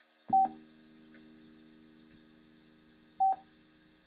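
Electric guitar: a chord struck about a third of a second in and left ringing for about three seconds, then struck again near the end. Each strike carries a short, loud high ping, and these two pings are the loudest sounds.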